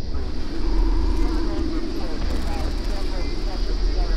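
A deep, steady rumble with indistinct, muffled voices over it.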